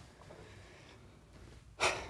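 Quiet room tone, then near the end one short, sharp breath through the mouth from someone whose lips are burning from hot sauce.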